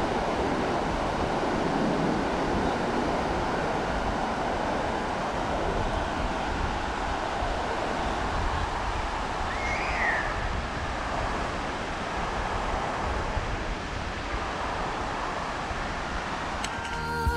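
Surf washing in on a sandy beach, a steady rush of breaking waves, with wind buffeting the microphone.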